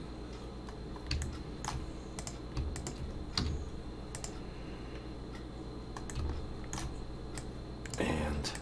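A handful of scattered clicks from a computer mouse and keyboard as nodes are placed and dragged, over a faint steady hum.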